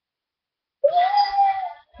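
A puppy whining once: a single high cry about a second long that starts a little under a second in, rising at first and then holding steady.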